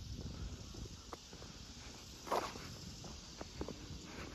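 Quiet footsteps of a person walking on pavement.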